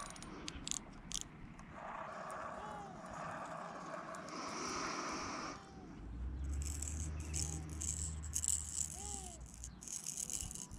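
Hard-bodied squid jig with a built-in rattle, shaken by hand so the rattle clicks quickly in the second half, after some lighter clicking of line and tackle being handled.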